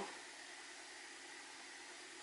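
Faint, steady hiss of room tone.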